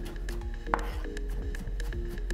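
Chef's knife rapidly chopping onion on a wooden cutting board, a quick run of sharp knife strikes against the wood, with background music.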